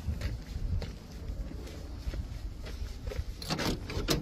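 Footsteps on a gravel lot with faint scattered ticks, over a low rumble of wind and handling noise on a handheld phone microphone.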